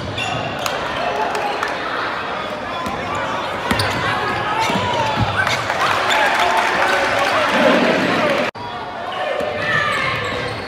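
Basketball game sound in a gym: a ball bouncing on the hardwood court amid overlapping shouts and chatter from players and spectators. The sound drops out abruptly for an instant about eight and a half seconds in, where two clips are joined.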